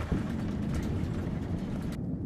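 Cabin noise inside a moving coach: a steady low rumble of engine and tyres on the road.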